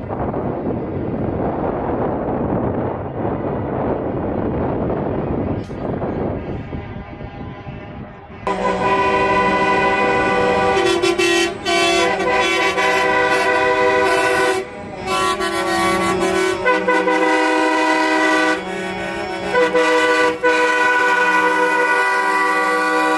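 Semi-truck air horns blowing in long, loud, overlapping blasts at several pitches as a convoy of tractor-trailer cabs drives past, starting about eight seconds in and breaking off and sounding again several times. Before the horns, a steady noisy rumble of the passing traffic.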